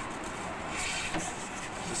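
Steady noise of street traffic, a continuous rushing hum with no single event standing out.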